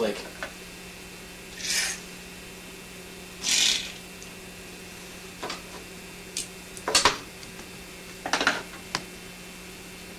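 Border tape being handled at a drawing table: two short rasping pulls of tape off its roll, then scattered clicks and taps as it is pressed down along the edges of the comic art. A steady low hum runs underneath.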